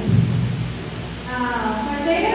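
A deep low rumble for about the first second, followed by a woman's voice through a microphone.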